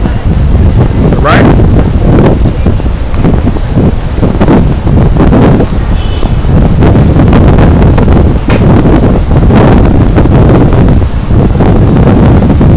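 Wind buffeting the microphone: a loud, uneven rumble that rises and falls in gusts, with a brief rising sweep about a second in.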